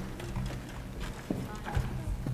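Footsteps and shoe knocks on hollow choir risers as singers shift positions, with a few murmured voices.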